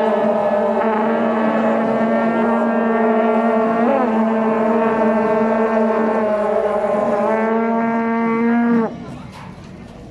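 A long, steady horn note with several tones sounding together, held for about nine seconds and cutting off suddenly near the end.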